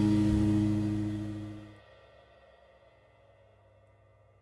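A song's final guitar chord ringing out and fading away, dying off about two seconds in.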